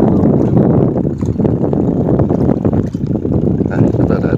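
Wind buffeting the microphone: a loud, steady low rumble that rises and falls in level.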